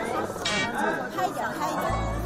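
Several people talking over one another, with background music underneath; a steady low bass note comes in near the end.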